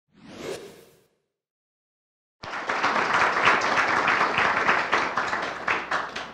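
A short whoosh sound effect, then, after a second of silence, audience applause that starts abruptly and begins to die away near the end.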